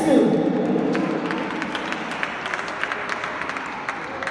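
A singer's voice trails off at the start, then scattered audience clapping over crowd noise.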